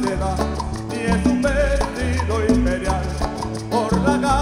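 A live folk group plays an instrumental passage of a Latin-style song, with a melody over a steady, stepping bass line.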